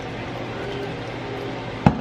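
Champagne cork popping out of the bottle near the end: one sharp, sudden pop over a steady low hum.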